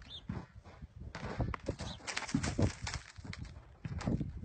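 A horse's hooves on snow-covered ground as it pushes a large ball, with a dense run of knocks and scuffs in the middle.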